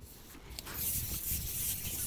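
A carbon fishing pole being shipped back, its sections sliding through the angler's hands with a rough rubbing hiss that starts about half a second in.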